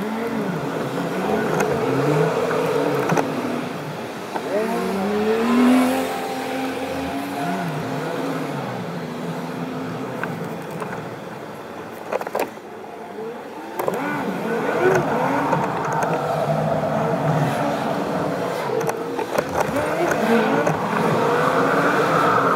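Car driving in slow city traffic, heard from inside the car: engine and road noise whose pitch rises and falls as it speeds up and slows down, with a quieter stretch about halfway through.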